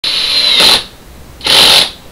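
Cordless drill running in two short bursts into a wooden board. The first burst lasts most of a second, and the second, shorter one comes after a brief pause.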